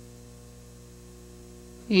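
Steady electrical mains hum on the audio track, with no other sound until a voice starts at the very end.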